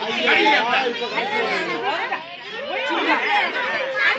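A group of children chattering and calling out all at once, many high voices overlapping, with a brief dip in the noise a little past halfway.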